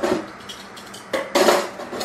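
Dishes, cookware and utensils clattering on a kitchen counter, with a louder burst of clatter about a second in.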